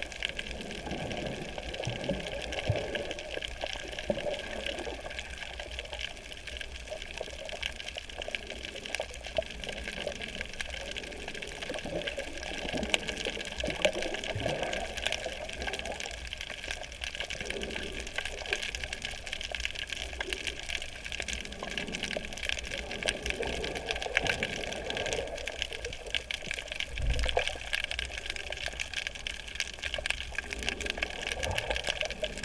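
Underwater sound of a coral reef heard from a camera in the water: a steady watery hiss with dense fine crackling, and irregular low swooshes of water moving past the camera.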